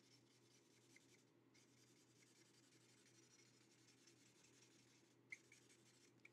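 Near silence: the faint scratch of a felt-tip ink marker dabbing colour onto a card panel, with one small click near the end.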